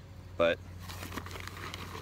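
Faint crinkling and rustling as wood pellets are scooped up by hand, over a steady low hum.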